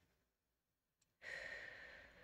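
A faint long exhale, a sigh-like breath out that starts a little over a second in and slowly fades. A tiny click comes just before it.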